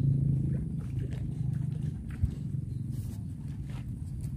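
A low, steady engine-like rumble, with a single short knock about two seconds in.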